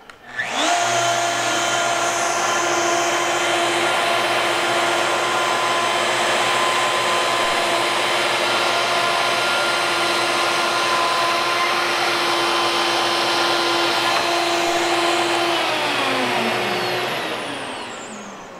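Plunge router with a one-inch ultra shear bit starts up and runs at a steady high whine, set to speed five, while taking a half-millimetre surfacing pass across a butcher block. About 15 seconds in it is switched off and spins down, its pitch falling.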